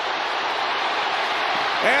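Stadium crowd cheering steadily during a long run, with no separate claps or shouts standing out. A commentator's voice comes back in near the end.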